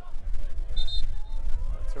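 Open-air soccer field ambience: a low rumble of wind on the microphone, a faint distant shout from the pitch, and a brief high-pitched tone just before the middle.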